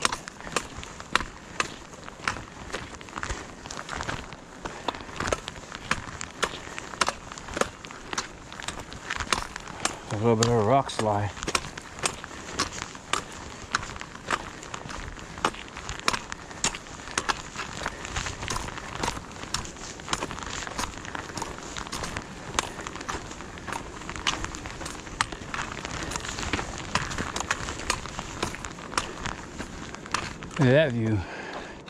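A hiker's footsteps and trekking-pole tips striking a dirt and gravel trail, sharp clicks about twice a second. A short burst of voice breaks in about ten seconds in.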